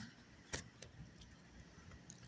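A sharp metallic click about half a second in and a fainter one just after, from the metal leash clasp and ring on a small dog's collar knocking together as it walks, over a faint low rumble.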